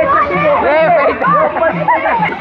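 Several voices chattering and calling out, with rising and falling shouts.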